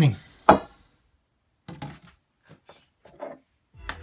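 A few separate light knocks and taps of small metal lathe parts being handled on a wooden workbench, with pauses between them. Music comes in near the end.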